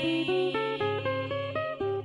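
Acoustic guitar played on its own in an instrumental passage between sung lines: a melody of quick single plucked notes, about five a second, over held bass notes.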